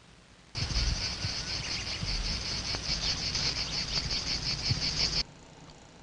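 Outdoor insect chorus, a rapid, evenly pulsing high-pitched chirring, over a low rumble of background noise. It starts abruptly about half a second in and cuts off abruptly about five seconds in, at a film cut.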